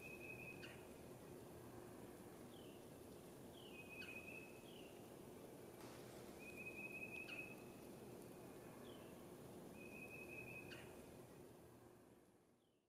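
Faint whistled bird call: a short sliding note and a longer held note, repeated about every three seconds over quiet background hiss.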